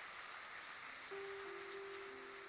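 Faint, even hall noise from the audience, and about a second in a single held musical note begins, with lower notes joining just after.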